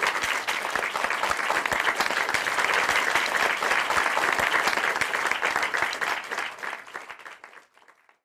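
An audience applauding, a steady dense patter of many hands clapping that fades out near the end.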